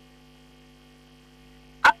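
Faint steady electrical hum of several constant tones on a telephone line. A man's voice cuts in with a sharp onset near the end.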